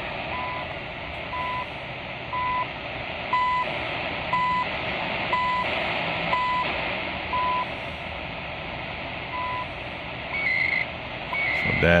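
CHU Canada shortwave time signal received on 7850 kHz through a portable receiver's speaker: short one-second tone beeps over steady shortwave static and hiss. One beep is skipped about two-thirds of the way in, and near the end the beeps give way to brief higher-pitched data bursts. The signal is coming in, showing the 7850 kHz transmitter is on the air.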